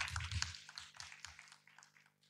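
Small audience applauding, the clapping thinning out and dying away about a second and a half in.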